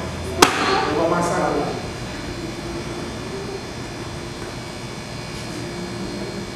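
A single sharp smack about half a second in, then a brief voice, then a faint steady hum of room tone.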